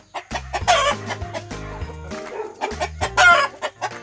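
Game-fowl chickens of a fighting breed calling loudly twice, about half a second in and again near three seconds, the second call the loudest, over background music with a steady, repeating bass line.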